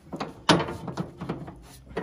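Metal clanks and knocks from a John Deere 400's three-point hitch link being wiggled by hand to line up its pin. One sharp clank comes about half a second in, with lighter knocks after it.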